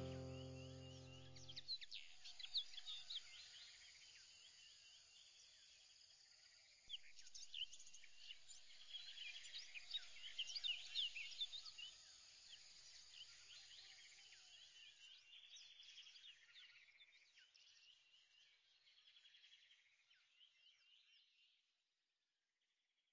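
Background music ends about two seconds in. After it comes faint birdsong: many short, high chirps and trills. They get busier about seven seconds in, then fade away gradually.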